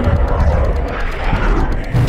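Loud, steady jet engine roar of a fighter jet passing low and fast, heavy in the low end.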